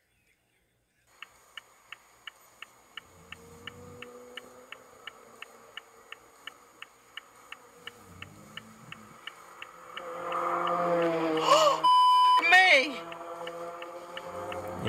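A car's turn-signal indicator ticking steadily, about three ticks a second, in a stationary car at a red light. Near the end raised voices break in, and a short steady beep covers part of them.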